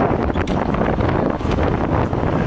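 Wind buffeting the microphone over outdoor street noise: a loud, steady rumbling rush with a few faint clicks.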